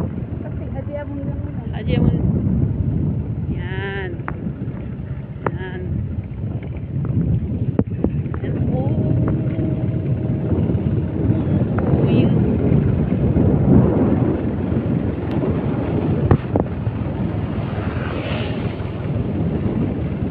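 Wind rumbling on a phone microphone outdoors, with a few brief snatches of distant voices or calls.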